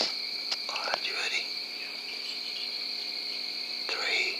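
Insects trilling steadily in the night, a constant high-pitched drone, with a short soft wavering call or whisper about a second in and another at the very end.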